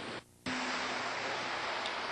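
Steady rush of ocean surf and wind, broken by a brief dropout about a quarter second in.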